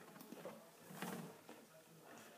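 Quiet room with a few faint clicks and rustles, and a brief low hum from a person's voice about a second in.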